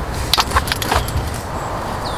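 A few light clicks and taps in quick succession, typical of tableware being handled on a metal camp table. They sit over a steady background hiss.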